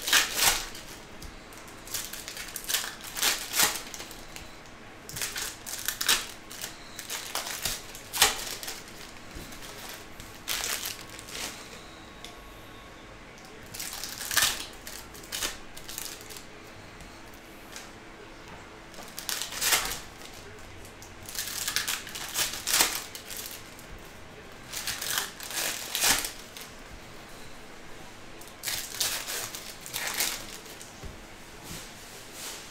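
Foil trading-card pack wrappers being torn open and crinkled by hand, in short crackly bursts every couple of seconds.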